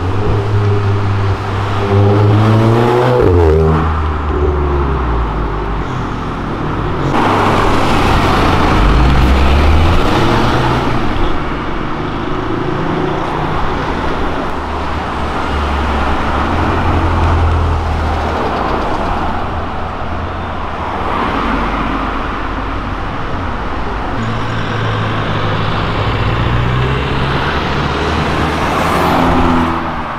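City street traffic: car engines running and accelerating past. Engine notes rise as cars pull away, about two to four seconds in and again near the end.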